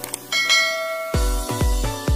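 Notification-bell sound effect: a short click, then a bell chime that rings on. A little over a second in, background music comes in with three deep bass notes about half a second apart.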